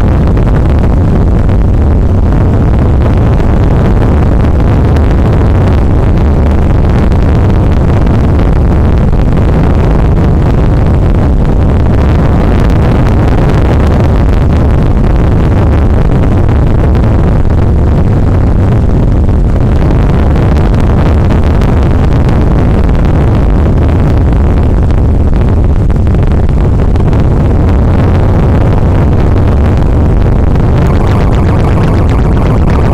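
Harsh noise music: a loud, unbroken wall of distorted rumble and hiss, heaviest in the bass, with no beat or melody.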